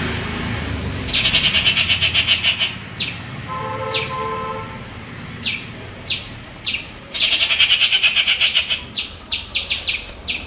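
Birds calling: two bursts of rapid, harsh chattering about a second and a half long each, with short sharp downward-sweeping calls between and after them, several in quick succession near the end.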